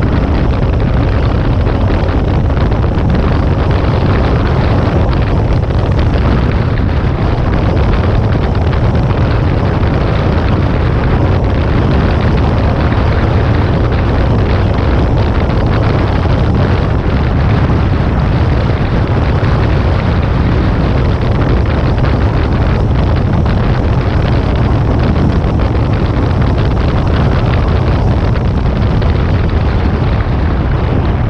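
Jet ski running at high speed, around 40 mph, its engine and hull noise on the water mixed with loud, steady wind buffeting on the microphone.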